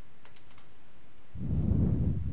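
Computer keyboard typing: a few light keystroke clicks in the first half-second. From about a second and a half in, a louder low sound rises, lying mostly below 1 kHz.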